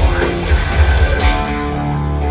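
Live heavy metal band playing with heavily distorted electric guitars and pounding drums. About one and a half seconds in, the drums stop and a sustained chord rings on.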